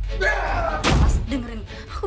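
A single sharp slam or thud just before one second in, between bursts of a person's voice.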